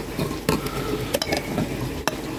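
Hard plastic pipe fittings handled and pulled off a ribbed flexible pond hose, giving a few sharp clicks and knocks, one about half a second in and a close pair just past a second.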